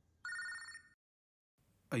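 Mobile phone ringtone for an incoming call: a single short electronic ring, under a second long, that cuts off suddenly.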